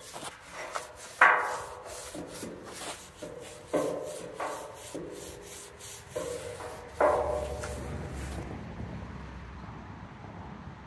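A stiff scrub brush scrubs degreaser into a freshly sandblasted steel truck frame. Several sharp metallic clanks ring out briefly; the loudest comes about a second in and another about seven seconds in.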